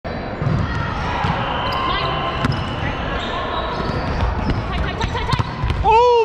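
Volleyballs being struck and bouncing on a gym floor in a large indoor hall, several separate thuds at irregular intervals over steady player chatter. A voice starts an exclamation, "Oh my", at the very end.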